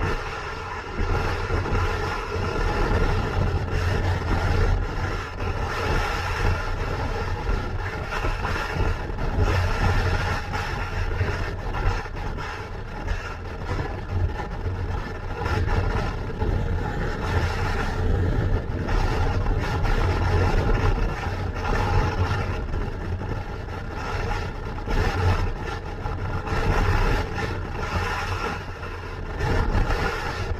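Motorcycle engine running at a steady cruise on the open road, with wind rush on the microphone and tyre noise.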